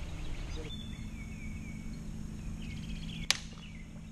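Outdoor lake ambience: short bird chirps over a steady low hum, with one sharp crack about three seconds in.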